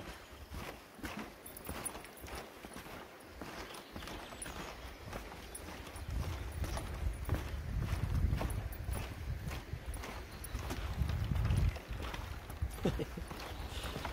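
Footsteps on the wooden plank deck of a suspension footbridge, an even run of knocks and clicks, with a low rumble for several seconds from about halfway through.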